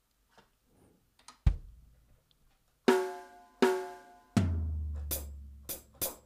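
Single hits from the sampled drum kit of the Engine 2 virtual instrument, played one at a time: a bass-drum thump about one and a half seconds in, two pitched drum hits about three seconds in, a long low boom, then a few short, bright hi-hat strikes near the end.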